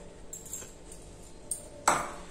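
Stainless steel kitchenware handled on a counter: a couple of faint clinks, then one sharp metal knock with a short ring near the end.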